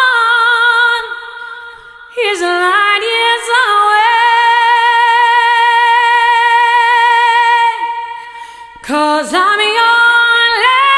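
A woman singing a slow ballad: phrases with short breaks between them and one long held high note lasting about four seconds in the middle.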